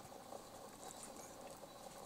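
Faint rustling with a few soft ticks from dogs moving about close by in snow, barely above quiet.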